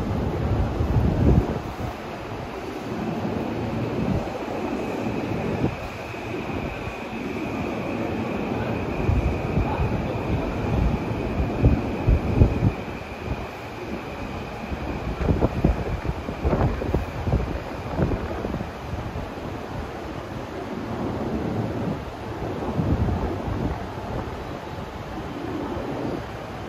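Rumbling railway-station platform noise around a stationary E233 series electric train, with scattered knocks and a faint steady high tone through the middle.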